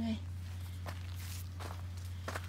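Footsteps on dry, loose garden dirt: a few short scuffs, under a steady low hum.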